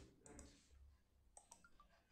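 Near silence with a few faint computer-mouse clicks, several close together about one and a half seconds in.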